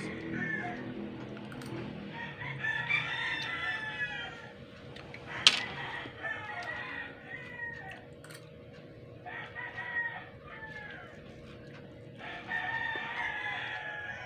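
A bird calling several times, about four long calls of a second or two each, with one sharp click a little past five seconds in and a faint steady hum underneath.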